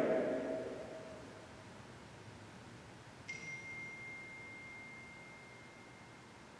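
The reverberant tail of a voice dies away in a large room, then about three seconds in a single high metallic ring sounds once, a clear steady tone that fades slowly.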